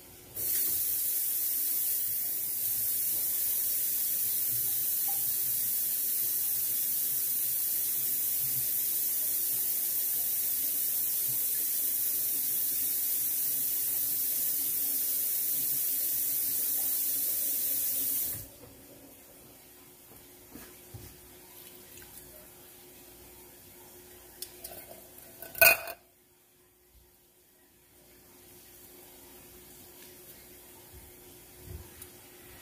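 Kitchen faucet running steadily for about 18 seconds, a high hiss of water that starts and stops abruptly, then small clicks and one sharp knock several seconds after it is shut off.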